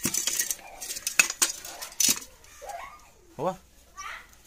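Steel dishes and pots clinking and knocking as they are set down and arranged on a shelf, with several sharp clinks in the first two seconds.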